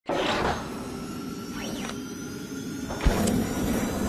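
Animated logo intro sting made of synthetic sound effects: a whoosh at the start, a tone that sweeps up and back down near the middle, and a low thump about three seconds in.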